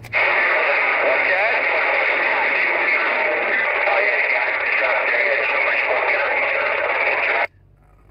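CB radio receiving a transmission buried in loud, steady static, with faint garbled voices under the noise. The static cuts off suddenly about seven and a half seconds in.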